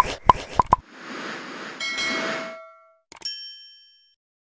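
Intro-animation sound effects: a quick run of about five pops in the first second, a noisy swish, then a single bright ding a little after three seconds that rings out and fades.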